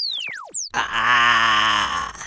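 Cartoon electric-zap sound effects: sweeping tones that glide down in pitch, ending about half a second in. Then a loud, drawn-out, wavering vocal groan, voiced for the electrocuted cartoon microchip.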